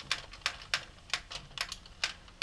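Addi Professional 22-needle circular knitting machine being hand-cranked, its needles clicking quickly and evenly, about six clicks a second. It is knitting a row with no yarn, which releases the stitches from the needles.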